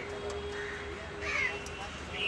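A crow cawing once, about a second in, over a faint steady hum.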